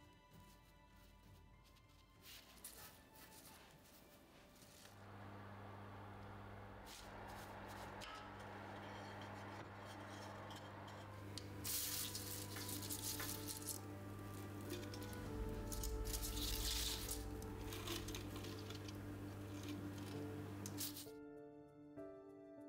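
Soft background music over a steady low hum that starts about five seconds in and stops just before the end. Through the middle there is a loud rustle of dried yarrow being handled on a baking sheet.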